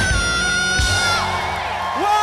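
A singer holds the long final note of a rock song over electric guitar and drums. The note breaks off about a second in, and the audience cheers and whoops.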